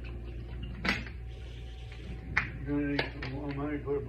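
Steady low road rumble inside a moving car, with two sharp knocks in the first half. A voice with held, stepping pitches comes in near the end.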